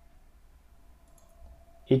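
Faint click of a computer mouse over a low, steady hum.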